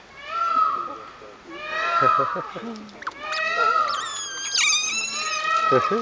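A group of Asian small-clawed otters calling with high-pitched squeals and chirps, one after another about every second. The calls overlap and rise higher in pitch a little past halfway.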